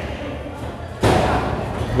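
A single heavy thud about a second in: a wrestler's body hitting the ring, with the hall's echo after it.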